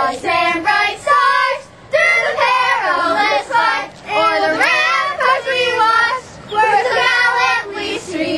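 Several girls singing together without accompaniment, in phrases broken by short pauses.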